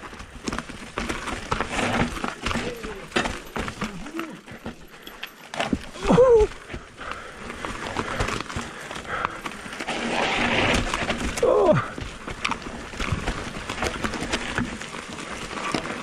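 Electric mountain bike rattling and clattering over rocks and roots on a technical downhill, with a steady stream of sharp knocks from the frame, chain and suspension and tyres crunching over the dry trail. Two short falling vocal sounds from the rider come about 6 and 11.5 seconds in.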